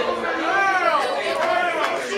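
Men's voices talking and calling out over one another.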